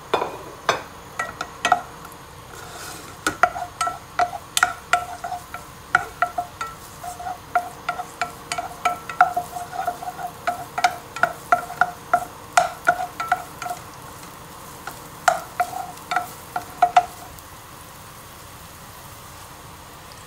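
Wooden spatula stirring chopped spring onion in a non-stick saucepan, knocking against the pan again and again, each knock with a short ringing tone, over a faint sizzle of frying. The knocking stops a few seconds before the end, leaving only the sizzle.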